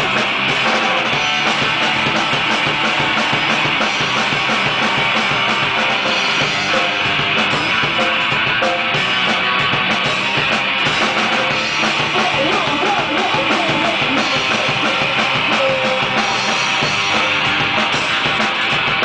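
Live rock band playing loudly: a drum kit and electric guitar in a dense, continuous wall of sound.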